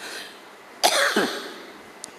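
A man's single short cough into the microphone, starting sharply a little under a second in and fading out quickly.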